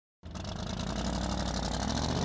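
A car engine idling with a fast, even rumble, played as a sound effect. It comes in sharply out of a brief silence and grows slightly louder.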